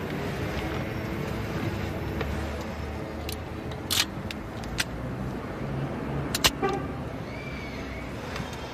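Steady low rumble of a car interior on the move, with a few sharp metallic clicks from a revolver being handled and its cylinder loaded, the loudest about four seconds in and a double click about six and a half seconds in.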